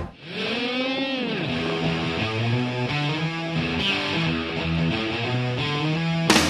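Background music led by a distorted electric guitar. It opens with a swooping pitch bend that rises and falls back, then settles into held notes.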